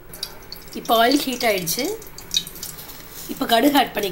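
A voice speaking in two short stretches, with faint light drips of water between them.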